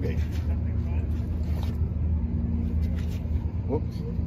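Steady low mechanical hum of a running engine, unchanging throughout.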